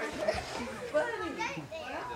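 Indistinct chatter of children's and adults' voices in a crowded room, with no single clear words.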